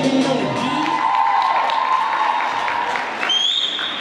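Dance music stops within the first second, and an audience applauds and cheers, with a shrill whistle near the end.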